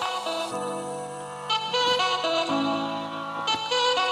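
Music playing from a cassette on a Panasonic RQ-SX30 personal cassette player, heard through a small external speaker, with the player's bass boost switched on. A melody of held notes moves over a steady bass line.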